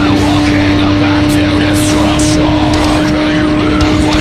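BMW S1000RR's inline-four engine running at a steady high rpm, its pitch rising slowly as the bike pulls along, with rock music over it.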